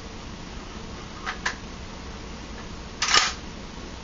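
Metal bolt of a KJW M700 gas bolt-action airsoft sniper rifle being worked by hand: two light clicks a little over a second in, then a louder sliding clack about three seconds in. The bolt runs loose and easy because it only draws the hammer back rather than compressing a spring.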